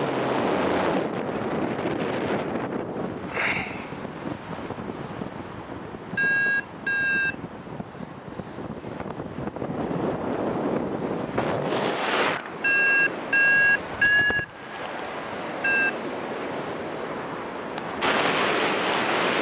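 Wind rushing over the microphone in flight, swelling and easing, with a paragliding variometer giving short, steady-pitched beeps: two about a third of the way in and four more later.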